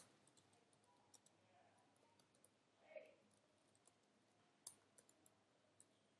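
Near silence, with faint computer keyboard key clicks scattered through it as text is typed.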